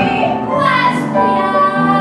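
A woman singing a musical-theatre song with piano accompaniment, holding long notes.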